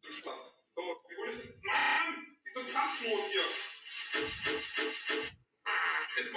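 Chopped-up voice and sound-effect snippets from a YouTube Kacke remix edit: a buzzing electronic tone about two seconds in, then a short sound stuttered about six times in quick, even repeats like a beat.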